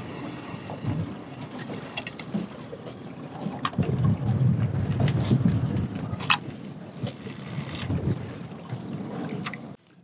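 Wind buffeting the microphone out on open water, a low rumbling haze with stronger gusts from about four to six seconds in, and a few light knocks.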